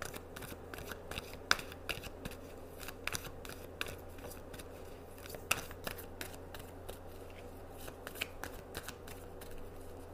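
A deck of tarot cards being shuffled by hand: irregular crisp clicks and slaps of card edges. Two louder snaps come about one and a half and five and a half seconds in, over a faint low hum.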